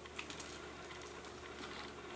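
Faint chewing of a bite of pepperoni bread, with a few small crunching clicks in the first half second over a low room hum.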